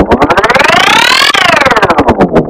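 Effects-processed Pepsi logo animation sound played 1.5 times faster: a buzzy synthetic tone that sweeps up in pitch and then back down, like a siren, over rapid pulses that quicken and then slow.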